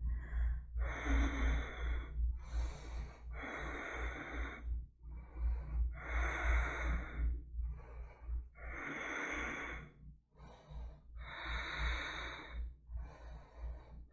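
A woman breathing slowly and audibly while holding a yoga bridge pose: about five deep breath cycles, each a short, softer breath followed by a longer, louder one.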